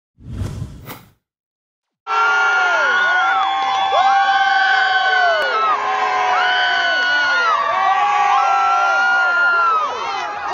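A crowd of fans cheering and shouting, many voices holding long whooping cries that fall away at the ends. It starts suddenly about two seconds in, after a brief noise and a second of silence.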